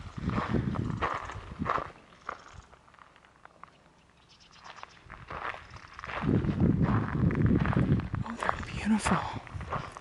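Footsteps crunching on a gravel path, with the shoes loud on each step. They stop for a few seconds, leaving it nearly quiet, and start again about six seconds in.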